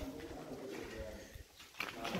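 A faint bird calling in the background over quiet room sound.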